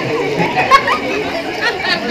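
Voices only: several people talking over one another.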